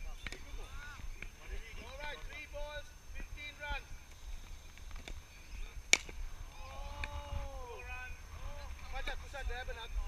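Faint, distant voices of players calling across an open field, with one sharp crack about six seconds in.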